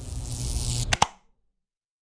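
Steady outdoor background noise, broken by two sharp clicks just before a second in, after which the sound cuts off to dead silence.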